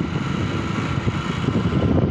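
Steady low rumble and hiss of wind on the microphone, with no distinct event.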